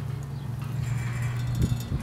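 Copper wind sculpture spinning, its vanes and rods clicking and rattling on the post in a steady rhythm over a low steady hum, with a few sharper knocks near the end.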